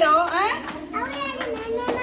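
Young children's voices chattering and calling out, high-pitched and rising and falling.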